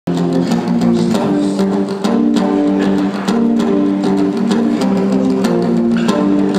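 Solo acoustic guitar playing: chords strummed in a steady rhythm, with sharp strokes on the strings.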